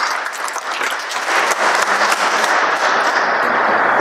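Applause from a small seated audience: a steady patter of many hands clapping.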